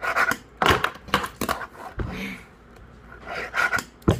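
Fingerboard tail popping and deck and wheels clacking on a wooden counter: a quick series of sharp clicks in the first second and a half and more near the end, with a breath about midway.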